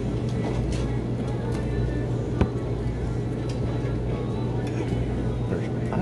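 Restaurant dining-room ambience: the chatter of other diners, music playing in the background and a low steady hum, with one sharp tap or clink about two and a half seconds in.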